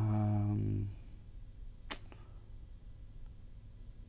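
A man's held, steady-pitched hesitation hum for about a second, then a single sharp click about two seconds in from small plastic figure accessories being handled.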